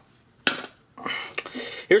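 Hard plastic handling sounds at a portable TV-radio's cassette deck just after the cassette is popped out. One sharp click comes about half a second in, then lighter clattering and rattling.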